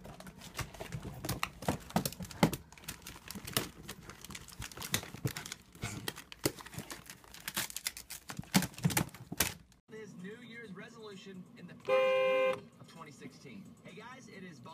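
A dog scrambling into a plastic storage bin of cardboard wrapping-paper tubes: rapid, irregular clattering and rustling for about ten seconds. After a sudden cut to a quieter scene, a loud, steady, horn-like tone sounds once for about half a second near the end.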